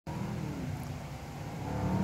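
Exhaust of a BMW M850i's turbocharged V8 heard from down the road as the car approaches, a low hum growing louder through the second half.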